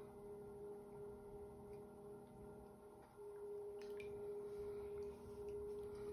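Electric potter's wheel running with a faint, steady hum of one pitch. The hum weakens briefly about three seconds in, then comes back.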